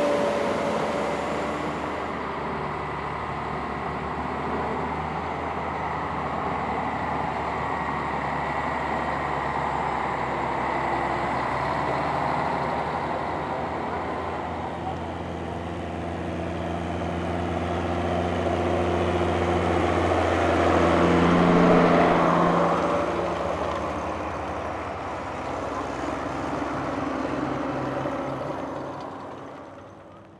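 Schlüter tractor diesel engines running, a steady drone that grows louder about twenty seconds in and fades out near the end.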